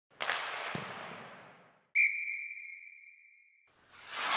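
Intro sting sound effects: a sudden swoosh that fades over about a second and a half, then a sharp, high ringing tone that fades away over nearly two seconds.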